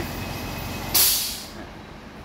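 A brief scraping hiss about a second in, dying away over half a second, as the carbon filter is slid out of a Sharp air purifier's housing, exposing the HEPA filter behind it.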